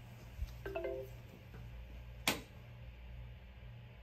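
A short electronic start-up chime of a few quick stepped notes from a DJI Agras remote controller as it boots, with a soft knock just before it. A sharp click, the loudest sound, follows about a second later, over a low steady hum.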